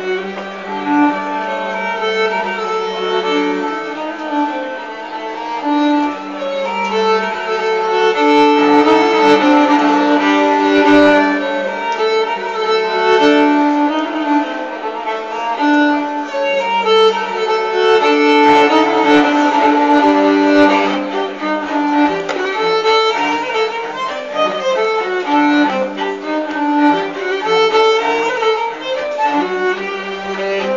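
Folk fiddle music played by a duo: a bowed melody over a held low drone note that comes and goes.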